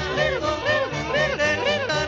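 Comic yodeling in quick up-and-down swoops, about two a second, over a bouncy band accompaniment with a plucked bass line.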